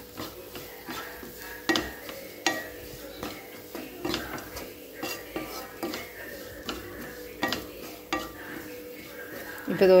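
A spatula stirring and scraping chopped beetroot and grated coconut around a nonstick frying pan, with irregular clicks and scrapes of the spatula against the pan.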